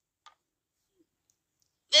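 Near silence with one short, faint click about a quarter second in; a voice starts right at the end.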